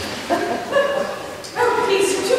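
A woman's high voice in short, separate calls, three or four in two seconds, each bending in pitch.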